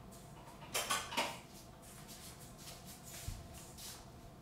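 Small yogurt jars and their lids being handled on a kitchen counter. There is a quick cluster of clinks and knocks about a second in, then softer handling sounds and a dull thump a little after three seconds.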